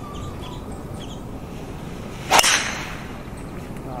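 A driver teeing off: one sharp crack of the clubhead striking the golf ball about two and a half seconds in, ringing briefly after.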